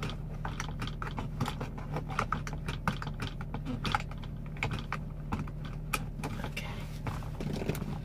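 Irregular small clicks and rustles, several a second, as the seatbelt's shoulder strap is fiddled with and adjusted by hand, over the steady low hum of the vehicle's idling engine.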